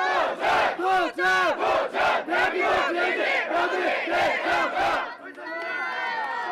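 A group of about thirty people shouting a rhythmic chant in unison, about two to three loud syllables a second. The chant stops about five seconds in, leaving a quieter murmur of mixed voices.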